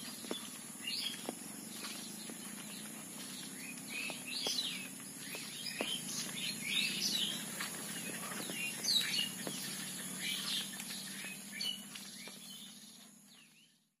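Outdoor village birdsong: many birds chirping and calling in short, overlapping bursts, over a steady high-pitched drone and scattered light taps. The sound fades out over the last couple of seconds.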